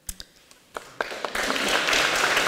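Audience applause: a few separate claps, then more hands joining in, so that it grows into steady applause from about the middle onward.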